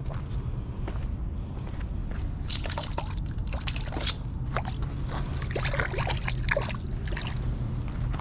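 Shallow water sloshing and splashing with irregular scrapes and steps on wet rocks and gravel, mostly from a couple of seconds in until near the end, over a steady low rumble.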